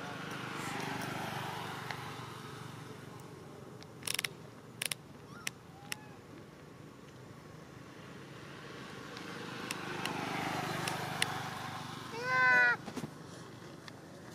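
Two vehicles passing on the road, each a slow swell of tyre and engine noise that rises and fades. Near the end a brief, loud call of rapidly repeated high-pitched chirps cuts in, and a few sharp clicks fall between the two passes.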